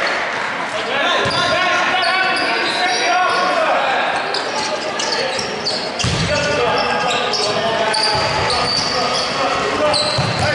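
Echoing voices and chatter in a gymnasium, with a basketball bouncing on the hardwood floor a few times, about once a second, in the second half.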